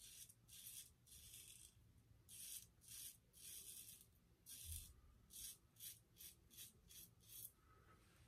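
Merkur 34C double-edge safety razor scraping stubble off the lathered neck in about a dozen faint strokes. The first strokes are longer and slower; in the last three seconds they come short and quick, about two a second.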